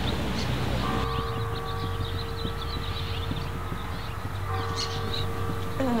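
Steady outdoor background noise with small birds chirping. A soft held tone at several pitches sets in about a second in, fades, and comes back near the end.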